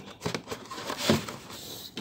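Clear plastic blister pack and its cardboard backing being handled and turned over, giving a few short crinkles and light taps, the sharpest about a second in.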